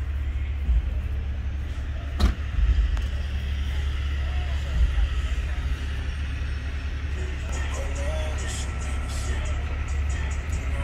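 Large diesel truck engine idling with a steady low rumble, a single sharp knock about two seconds in.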